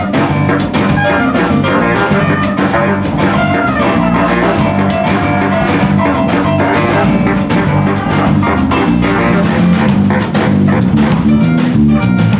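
A band playing together: drum kit, guitar and a baritone saxophone in a loose, busy jam.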